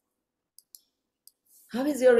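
Near silence broken by three or four faint, very short clicks, then a woman's voice starts near the end.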